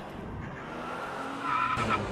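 Orange Volvo S60 driving hard through a bend, with steady road noise and its tyres squealing from about one and a half seconds in.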